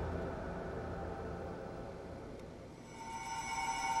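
Quiet suspense background score: a low sustained drone that fades away, then a swell of held, tense tones building near the end.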